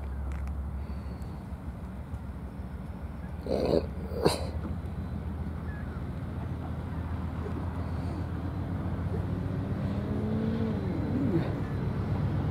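Low rumble of an approaching diesel freight train, growing steadily louder as the locomotives draw closer. About four seconds in there are two short, loud, sharp sounds close together.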